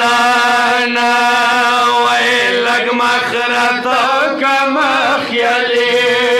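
Several men chanting a Shia mourning lament (noha) together into a microphone, drawing out long wavering notes over a steady held drone.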